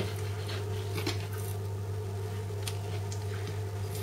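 Long kitchen knife slicing through a raw salmon fillet on a plastic cutting board: a few faint soft taps and squishes over a steady low hum.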